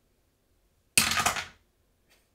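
A die tumbling down a wooden dice tower and clattering into its tray: one short rattling burst about a second in, lasting about half a second before it dies away.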